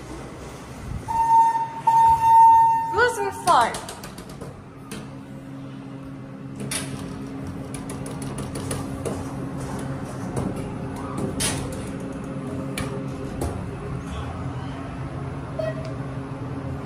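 TK (thyssenkrupp) elevator: a steady electronic tone sounds for about two seconds early in the clip, then the car runs with a steady hum, scattered clicks of buttons and door gear, and a short higher beep just before the end.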